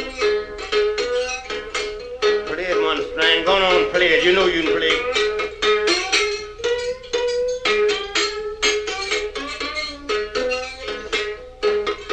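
Solo one-string diddley bow playing acoustic blues: the single string is struck in a fast, steady run of notes, with sliding glides in pitch near the middle.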